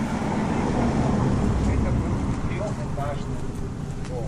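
A car drives past at low speed, its engine and tyre rumble swelling to a peak about a second and a half in and then fading.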